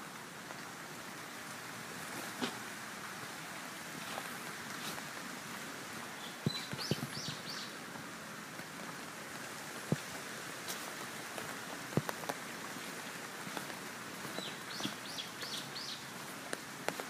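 A bird calling in two short runs of quick high chirps, about six seconds in and again near the end, over a steady outdoor hiss, with a few scattered footstep knocks on a stone path.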